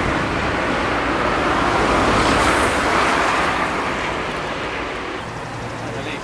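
Road traffic noise: a steady rushing sound of a vehicle going by, swelling about two to three seconds in and easing off near the end.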